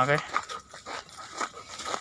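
Footsteps crunching on a dry, grassy dirt trail, a few short irregular strokes.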